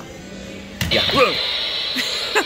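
Furry jumping-spider Halloween animatronic set off by its floor step pad: its loud sound effect cuts in suddenly just under a second in, a sustained high-pitched tone with hiss.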